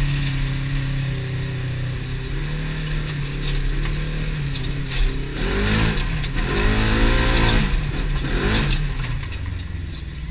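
Polaris RZR 1000's twin-cylinder engine running steadily on the move, then revving up and down several times from about halfway, just after a thump; the revs drop away near the end.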